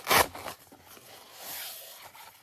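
Hook-and-loop (Velcro) strap of an upper-arm blood pressure cuff being peeled open: a short, loud rasp just after the start, then a softer, longer rasp about one and a half seconds in as the cuff is pulled off and folded.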